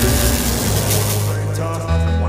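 Intro sound design with music for an animated logo reveal: a rushing, hissing sweep fades away over about a second and a half above a held deep bass tone, and a new bass note comes in near the end.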